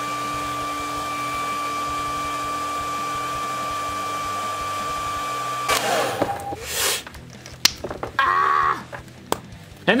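Handheld electric hot-air blower running steadily after spinning up, then switched off about two thirds of the way through, used to warm an action figure's plastic neck peg for a head swap. Light plastic clicks follow as the parts are handled.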